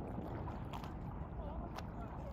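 Wind rumbling on a phone microphone over open shallow water, with light water sounds around a paddleboard and a few faint clicks.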